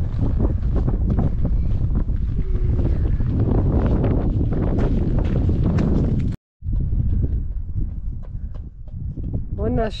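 Wind buffeting the microphone, a dense low rumble outdoors. It cuts out for a moment about six and a half seconds in and then carries on more quietly.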